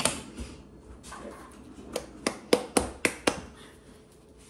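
Metal can of pumpkin puree being knocked: a click at the start, then six sharp taps in quick succession, about four a second, from about two seconds in, as the thick puree is knocked loose into the bowl.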